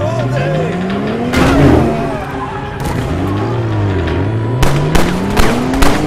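A car engine accelerating hard, its pitch climbing, dropping back, then climbing again. A run of sharp bangs comes in the last second and a half, with film score underneath.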